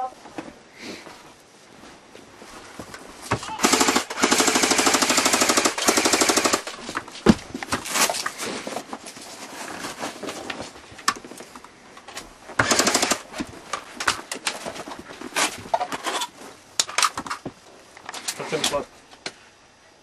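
Airsoft guns firing on full auto: one long burst of rapid fire lasting about three seconds, a few seconds in, then shorter bursts and single shots through the rest.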